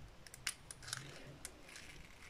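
Faint, light handling sounds: a few small clicks and soft rustling as hands work over a diamond-painting canvas and its plastic tools.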